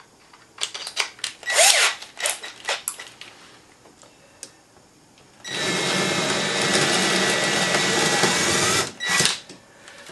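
Cordless drill: its chuck clicks as the bit is tightened, then the drill runs steadily for about three and a half seconds, boring a hole through a black locust slab. A short burst of the motor follows near the end.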